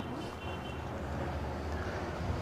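A pause in speech, filled only by a steady low hum and faint hiss of background noise.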